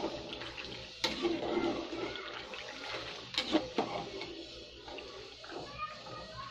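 Noodles being stirred in water in an aluminium pot: steady swishing and sloshing, with the spoon knocking against the pot about a second in and three times in quick succession around three and a half seconds in.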